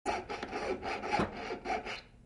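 Jeweler's piercing saw cutting a small workpiece on a wooden bench pin, in quick, even back-and-forth strokes.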